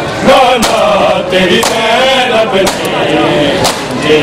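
Men chanting a noha (Shia lament) together, with sharp slaps of hands beating on chests (matam) about once a second keeping the rhythm.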